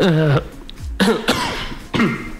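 A man coughing about a second in, turned away from the microphone with a hand over his mouth.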